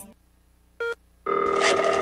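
Telephone ringing as a sound effect: after a moment of near silence, a short pitched blip just under a second in, then a steady ring lasting about a second.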